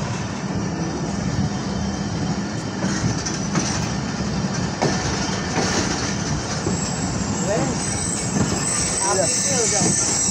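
Passenger train coach running on the rails, heard from an open window: a steady rumble of wheels on track. A thin, high-pitched wheel squeal joins in during the second half.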